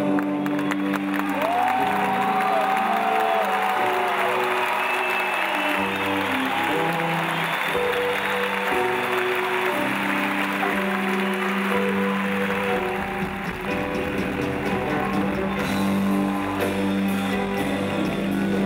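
Rock band playing live, with held piano and bass notes shifting every second or two, over steady applause and cheering from a large crowd.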